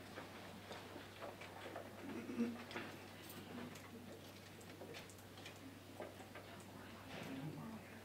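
Hushed room: faint scattered clicks and rustles, with a few brief faint murmurs of voices, over a steady low hum.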